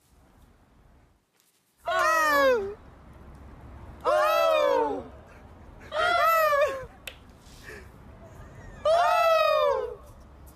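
A spectator's voice letting out high, drawn-out shrieks in imitation of a tennis player's shot grunt, four times about two seconds apart, each one falling in pitch.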